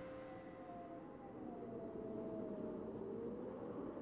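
Faint sustained drone slowly gliding down in pitch over a soft hiss, typical of an ambient documentary score.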